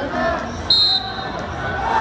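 A referee's whistle gives one short, sharp, high blast about two-thirds of a second in, ringing briefly in the gym, over the murmur of crowd voices.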